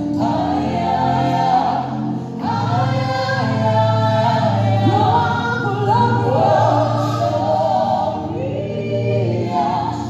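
Live gospel song: a woman sings lead with backing singers, over a band with a steady bass and drums.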